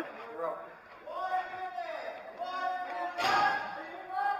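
Men's voices calling out at a distance, echoing in a large hall, with a short burst of noise a little after three seconds in.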